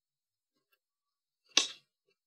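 Near silence, then a single short, sharp tap or click about one and a half seconds in.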